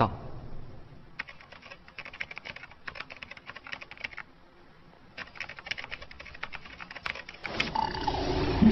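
Rapid typing on a computer keyboard: a quick run of key clicks, a brief pause near the middle, then another run. Music comes in near the end.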